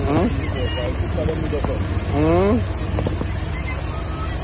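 Steady low rumble, with a person's voice calling out briefly at the start and again in a rising shout about two seconds in.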